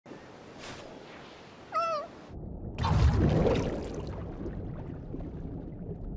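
A short cat-like meow, wavering in pitch, about two seconds in, over a soft hiss. About a second later comes a rush of noise like surf breaking, which fades slowly.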